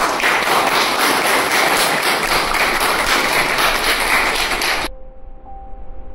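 Audience applauding loudly for about five seconds, cutting off suddenly. Soft background music with held notes follows near the end.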